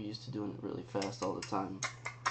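Quiet, broken murmuring, with light clicks and taps from a finger on a phone's touchscreen; the clicks get sharper near the end.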